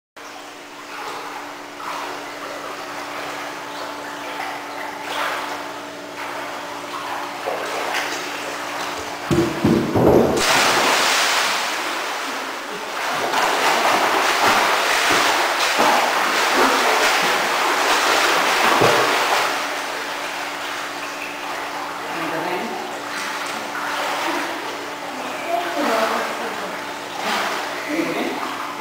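A swimmer jumping into a swimming pool: a sudden loud splash about ten seconds in, then several seconds of churning splashes as he swims, which die down after that. A steady hum sounds underneath during the first several seconds.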